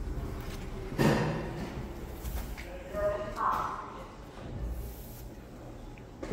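Kone monospace lift's single two-speed sliding doors shutting, with a thump about a second in, then a short beeping tone about three seconds in.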